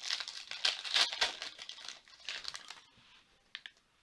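The wrapper of a 2020 Panini Prizm football card pack crinkling and tearing as it is pulled open by hand. It is loudest in the first second or so and dies away by about three seconds in, followed by a couple of small clicks.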